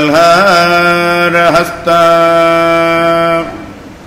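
A man's solo voice chanting Sanskrit verse to a slow melody, holding long sustained notes with a brief wavering ornament near the start. The line ends a little before the close, and the sound drops away.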